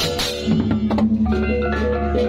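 Balinese gamelan beleganjur playing: large hand cymbals (ceng-ceng kopyak) clashing with drums, then, from about half a second in, the ringing tones of hand-held gongs sustain over a low gong drone.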